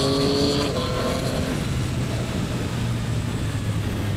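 Yamaha MT-09's 890 cc three-cylinder engine under way, its pitch stepping up sharply just under a second in as the Y-AMT automated gearbox drops a gear on the paddle. The engine note then fades, leaving a steady rush.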